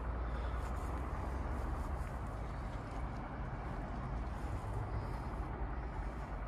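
Faint, steady outdoor background noise with a low rumble, without distinct events.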